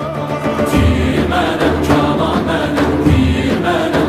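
Live ensemble music: many voices chanting together over traditional string instruments and frame drums keeping a steady beat.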